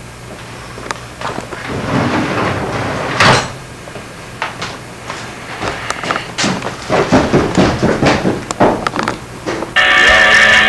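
A series of knocks, bangs and clatters, with one loud thump about three seconds in and a busy run of quick knocks in the second half.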